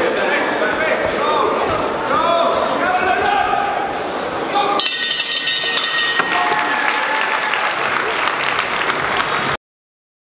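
Boxing ring bell rung in a rapid burst for about a second, sounding the end of the round, over shouting from the crowd and corners in a large hall. The sound cuts off suddenly near the end.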